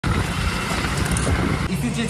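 A motorcycle running while it is ridden, a steady mix of engine and road and wind noise, which cuts off shortly before the end.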